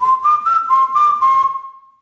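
A short whistled melody of a few quick stepping notes, ending on a long held note, over a light rhythmic beat: a radio station jingle.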